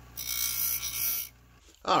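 Bench grinder running with a steady low motor hum while a dash-kit bracket tab is held against the wheel, giving a loud, high grinding hiss for about a second. The hiss stops and the motor hum carries on briefly alone. The tab is being ground off in place of snapping it with pliers.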